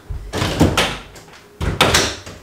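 A panelled closet door pulled open with some clatter and handling noise, then pushed shut with a solid thud near the end.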